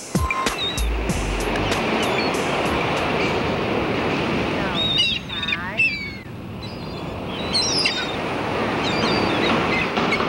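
Ocean surf washing steadily on a beach, with a few short high chirps about five seconds in and again near eight seconds. A low music note sounds briefly about a second in.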